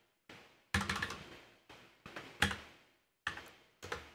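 Computer keyboard typing: a handful of separate keystrokes at an irregular pace, with short pauses between them.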